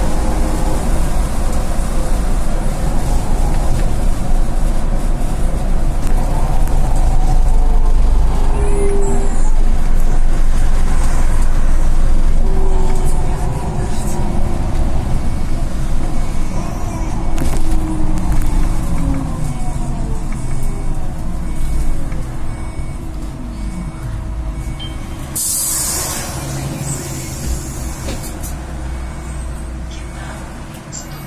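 Solaris Trollino II 15 AC trolleybus heard from inside the cab: a steady running rumble and the electric traction drive's whine rising in pitch as it speeds up, then sliding down as it slows. About 25 seconds in there is a short hiss of air from the brakes.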